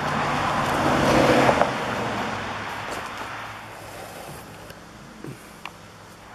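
A car passing by: its engine and tyre noise swells to its loudest about a second in, then fades steadily away.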